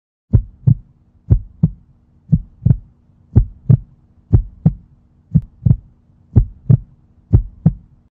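Heartbeat sound effect: eight lub-dub double thumps, about one a second.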